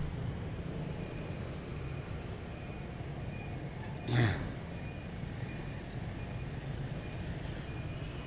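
Steady low background rumble, with one short falling vocal sound about four seconds in.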